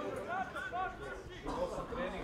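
Indistinct men's voices talking, only speech.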